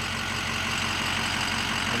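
2006 Ford F-250's 6.0-litre Power Stroke V8 diesel idling steadily.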